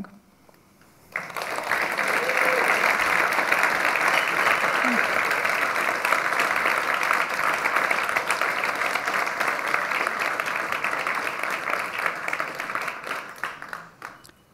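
Audience applauding at the end of a talk. The clapping starts suddenly about a second in, holds steady, and dies away near the end.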